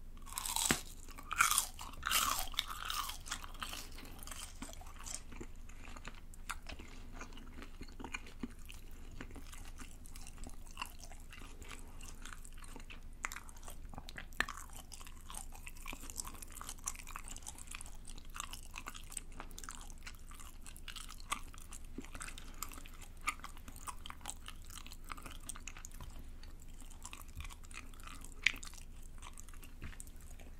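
Crunchy bite into a deep-fried rice cake (tteok) stick close to the microphone, with several loud crunches in the first three seconds, then softer, irregular chewing with occasional clicks.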